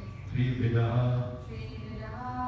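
A man chanting a Sanskrit verse in a steady recitation tone, one held phrase lasting about a second.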